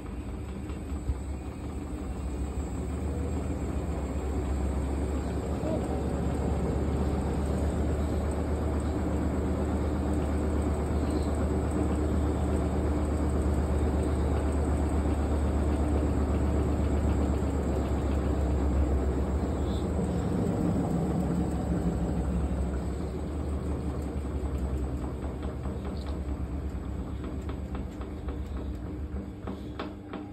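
Hotpoint WD860 washer-dryer's motor and drum turning a load full of detergent foam, a steady hum and low rumble that builds over the first few seconds, holds, then eases off in the last several seconds. The machine is fighting sudslock from an overdose of detergent.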